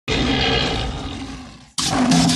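A lion's roar, loud at first and fading over about a second and a half before it cuts off suddenly. Cumbia music starts right after, with a steady scraping percussion beat.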